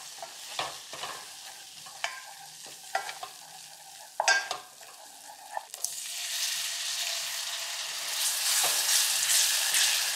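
Wooden spatula scraping and knocking against an enamel pot as butter and flour are stirred into a roux over a faint sizzle, with the loudest knock about four seconds in. About six seconds in, milk is poured into the hot roux and the sizzle rises to a steady hiss while the stirring goes on.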